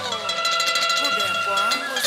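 Hát văn ritual music: a long held note with sliding plucked-lute notes around it, over a busy patter of bright metallic and wooden percussion clicks.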